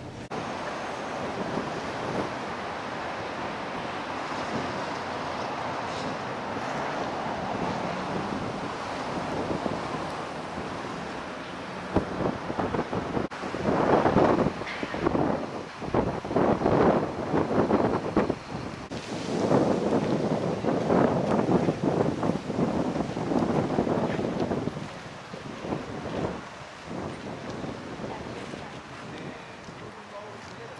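Wind blowing over the camera microphone: a steady rush at first, then loud, irregular gusts buffeting the microphone from about halfway through.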